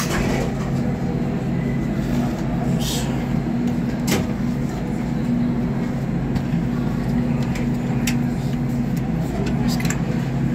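Dover hydraulic elevator's pump motor humming steadily during an upward ride, heard from inside the cab. A few sharp clicks as buttons on the car's panel are pressed.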